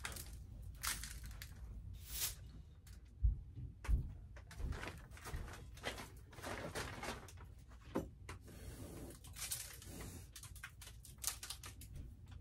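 Short, hissy puffs of breath blowing small flakes off a palm onto an epoxy tabletop, several times, with two low knocks about three and four seconds in.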